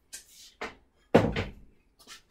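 Workshop items being handled while hunting for a nut: a couple of light clicks, then one louder knock with a low thud about a second in.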